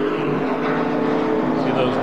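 NASCAR stock car V8 engines running at race speed, a steady multi-tone engine note whose pitch drifts slightly as the cars go through a turn.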